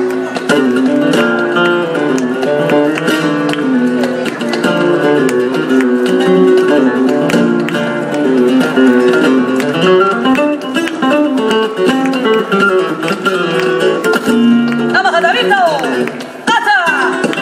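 Flamenco guitar playing bulerías, with sharp handclaps (palmas) keeping the rhythm.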